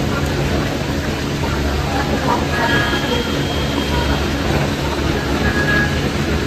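Steady loud rumble of large industrial fans running in an indoor gym, with a few faint brief high squeaks about halfway through.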